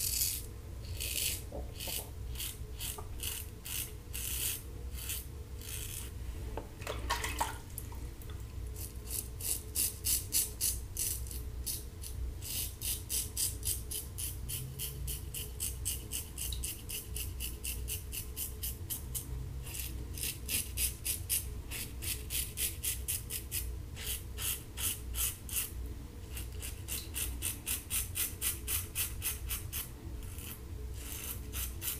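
A Standard aluminium safety razor with a Kai blade rasps through stubble in quick short strokes, several a second, in runs with brief pauses. This is the final pass against the grain, with a blade nearing the end of its life.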